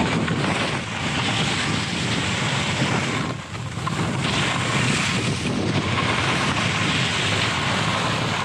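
Wind rushing over a moving action camera's microphone, mixed with the steady hiss of sliding over snow; it eases briefly about three and a half seconds in.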